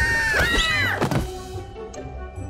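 A cartoon fairy character screaming, high-pitched and drawn out, ending in a thump about a second in. Trailer music follows.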